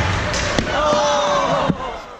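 Ice hockey play in a rink: sharp knocks of sticks and puck, one about half a second in and a louder one near the end, over a running hubbub of spectators' and players' voices. The sound drops away sharply after the second knock.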